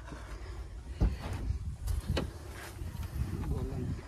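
Low rumbling wind and handling noise on the microphone, with two sharp knocks, about one second in and just after two seconds, and a faint voice near the end.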